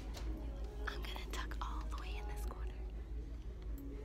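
A person whispering close to the microphone in short breathy phrases, over a steady low rumble.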